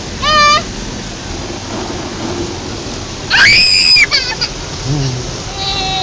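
Automatic car wash water jets drumming on the car body, heard from inside the cabin as a steady rain-like hiss. A child cries out briefly near the start, and a loud, high-pitched wail follows about three seconds in.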